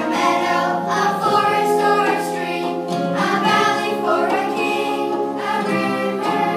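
A choir singing a song with musical accompaniment, held notes changing every second or two.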